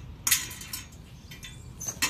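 Metal frame of a folding bike cargo trailer being handled: a sharp clank about a third of a second in, then lighter clicks and a short high squeak near the end.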